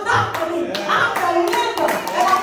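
Hand claps at an uneven pace, with a voice carrying on over them.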